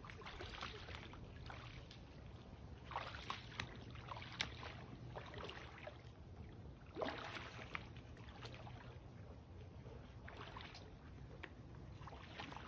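Faint, irregular splashing of rubber boots wading through a shallow puddle of standing water, a soft slosh every second or two.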